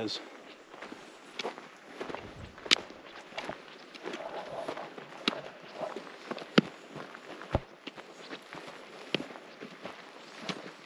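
Footsteps of a person walking across dry dirt and grass, irregular crunching steps at an unhurried pace.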